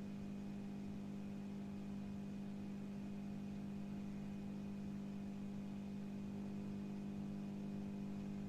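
Steady low electrical hum with fainter steady tones above it and a light hiss, unchanging throughout: the background noise of the recording during a pause in speech.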